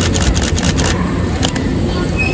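Nankai 7100 series electric train creeping into a station platform: a steady low rumble of its running gear, with a quick string of sharp clicks through the first second and a half.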